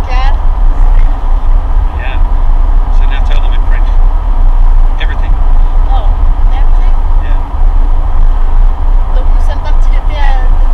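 Loud, steady low rumble of a car's engine and tyres heard inside the moving car's cabin.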